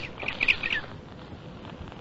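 Bird calls laid in as a radio-drama sound effect: a quick run of short chirps in the first second, then only a faint background.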